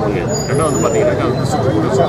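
A man speaking over steady, dense low background noise outdoors.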